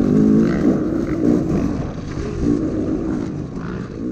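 Dirt bike engine running under throttle while riding along a trail, its pitch rising and falling with the throttle. It slowly gets quieter.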